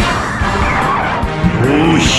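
A loud, rushing, engine-like battle sound effect layered over background music, starting abruptly.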